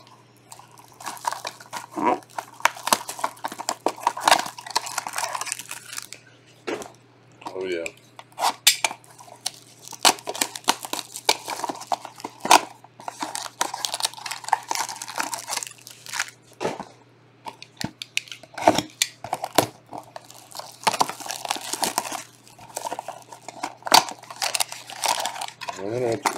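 Clear plastic shrink-wrap on a trading-card box crinkling and tearing as it is slit and peeled off by hand, in irregular rustling bursts with sharp crackles.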